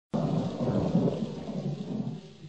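Low, uneven rumble like thunder over a steady rain-like hiss, starting suddenly just after the start: a thunderstorm sound effect opening the intro.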